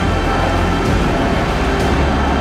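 A pack of motocross bikes racing out of the first turn at full throttle, many engines running together in a dense, continuous blare, under a background music bed.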